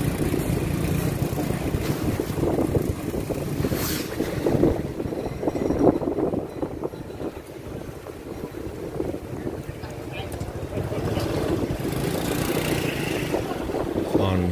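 Motor scooter riding along a street: its small engine running, with wind noise on the microphone. It turns quieter for a few seconds around the middle, then picks up again.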